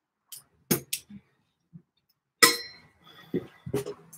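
A few light taps and knocks, then a loud sharp clink about two and a half seconds in that rings on briefly, followed by softer knocks.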